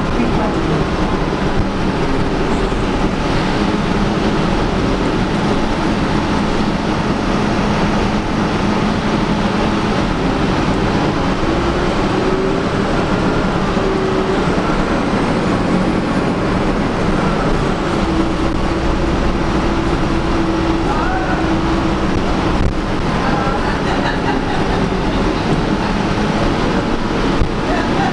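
Interior ride noise of a 2011 Gillig Advantage transit bus under way: steady engine and road noise, with a drivetrain tone that rises and falls in pitch as the bus changes speed.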